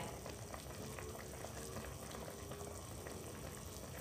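Duck braising in coconut water in a pan, simmering on low heat with a faint, steady bubbling.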